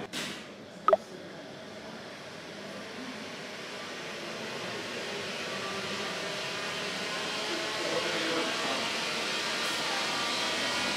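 Large Tesla coil switched on for a demonstration: a sharp snap about a second in, then a steady electrical noise that slowly grows louder.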